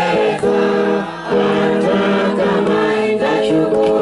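A choir of voices singing a worship song in held notes, with a short break about a second in.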